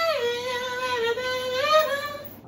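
A man singing one long, high held note with no instruments; the pitch dips about a quarter second in and rises again near the end.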